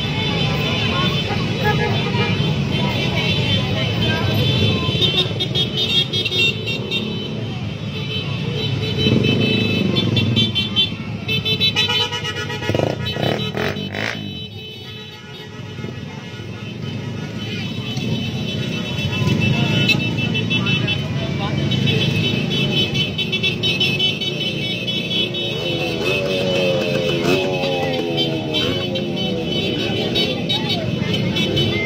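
Vehicle horns sounding over running engines and voices, the horns held in long blasts through much of the stretch. Music plays underneath.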